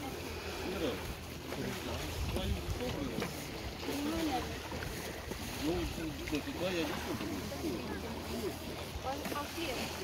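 Indistinct voices of people talking at a distance, over a steady low rumble and wind on the microphone.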